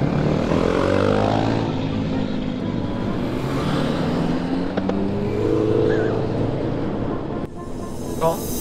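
Honda CB1300 Super Bol d'Or's inline-four engine pulling the motorcycle away, its pitch rising twice as it accelerates, with wind rushing over the helmet-mounted microphone.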